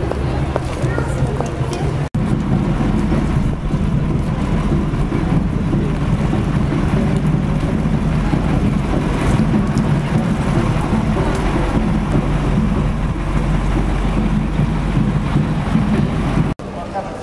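Wind buffeting the camera's microphone: a steady, loud low rumble, with indistinct street voices underneath. It cuts out for an instant about two seconds in.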